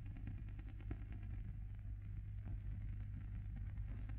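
Low steady hum and hiss of an old film soundtrack, with a few faint clicks.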